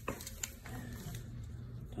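A couple of light clicks from hands handling a plastic canopy rod clip and a screwdriver, over a low steady hum.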